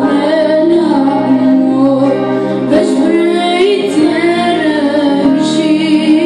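A boy singing an ilahi, a devotional song, with held notes that waver and turn, accompanied by sustained chords on a keyboard.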